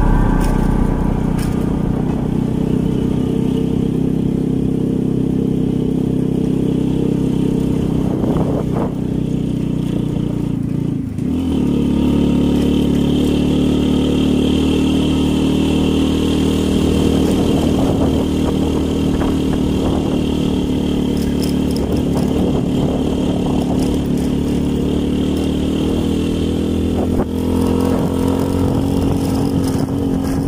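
Motorcycle engine running steadily while riding, with a brief dip and change in the engine note about a third of the way through.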